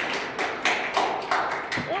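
Scattered applause from a small audience: a few people clapping in uneven, separate claps.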